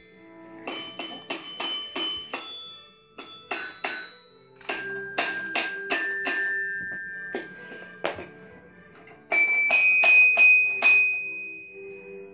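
Toddler playing a toy xylophone with metal bars, striking them in uneven quick runs, each note ringing briefly. There are about six fast notes near the start, then scattered runs, with a last cluster near the end.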